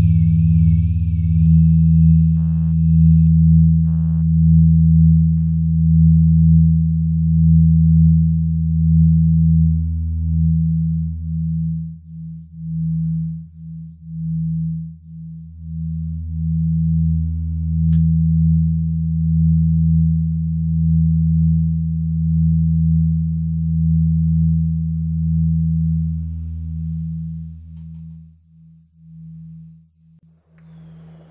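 Minimal electronic drone music: low, sustained sine-like tones that swell and pulse slowly, with a few soft clicks and short higher blips early on. The tones break into stuttering on-off pulses for a few seconds in the middle, resume, then stutter and fade away near the end.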